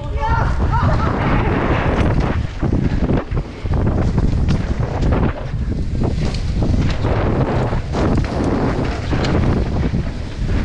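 Wind buffeting a helmet-mounted action camera's microphone and tyres roaring over a dirt forest trail while riding a mountain bike downhill at speed, with frequent knocks and rattles from the bike over bumps.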